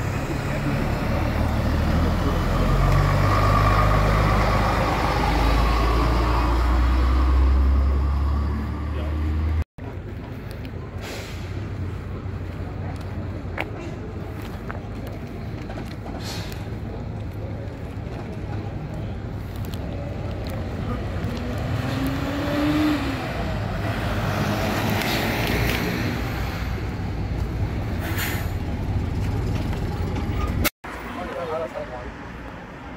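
Diesel engine of a single-deck bus running close by as it pulls away, a deep rumble that builds over the first few seconds. After a cut about ten seconds in, a quieter steady background of outdoor traffic noise.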